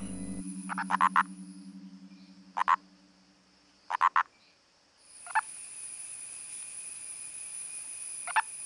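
A male purple frog (Nasikabatrachus sahyadrensis) gives its mating call. It is heard as four short calls a second or so apart, each a quick cluster of two to four pulses. A steady high-pitched hum comes in about halfway through.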